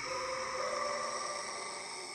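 Film score of sustained, held chords that change once early on.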